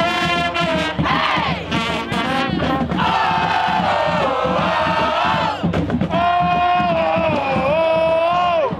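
A crowd of students and band members singing and shouting together in unison, loudly, with long held notes that bend and drop.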